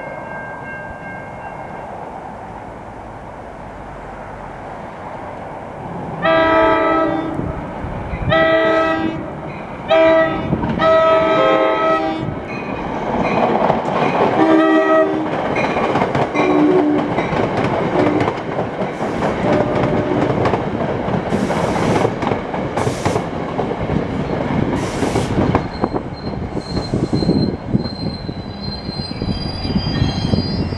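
NJ Transit commuter train's horn sounding four blasts for a road crossing, three long and a brief last one, as the train approaches, followed by the rumble and clatter of the coaches rolling into the station, with a high wheel squeal near the end as it slows.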